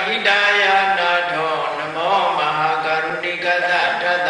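A Buddhist monk's voice chanting Pali verses through a microphone, in long held notes with slow rises and falls in pitch.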